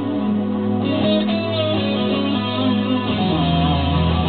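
Amplified electric guitar playing a slow solo of long, sustained notes, with a deeper low note coming in about three seconds in.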